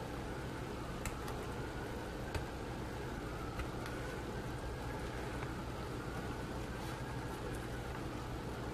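Faint clicks and scrapes of a hobby knife trimming flash from a pewter miniature, over a steady low electrical hum that is the loudest thing heard.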